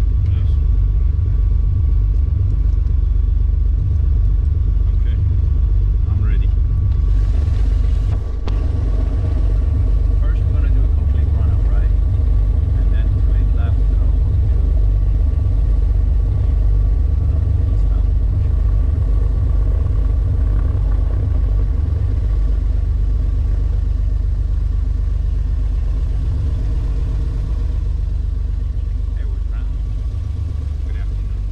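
Beechcraft Baron's twin piston engines running, heard inside the cabin as a loud, steady low rumble. A brief rush of hiss comes about seven to eight seconds in.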